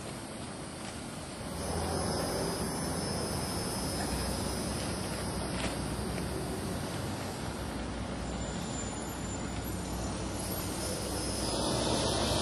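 Steady low rumbling background noise that gets louder about one and a half seconds in, with a few faint scuffs.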